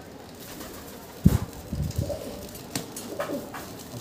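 A pigeon cooing, low and in short pulses, starting about a second in with a dull thump; a few faint clicks follow.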